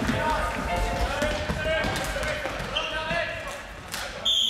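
Several voices shouting and cheering in an echoing sports hall after a floorball goal, with a sharp knock near the end.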